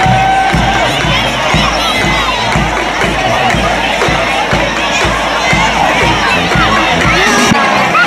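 A marching drum band's bass drum beats steadily, about two beats a second, under a crowd cheering with children shouting.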